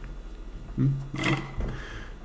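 A man's brief wordless vocal sound, low-pitched, in two short parts about a second in.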